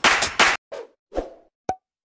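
Electronic intro music cuts off about half a second in. It is followed by two soft pop sound effects and one sharp click, the sound effects of an animated subscribe-button graphic.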